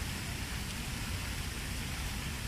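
Steady outdoor background noise, an even rushing hiss over a low rumble, with no distinct events.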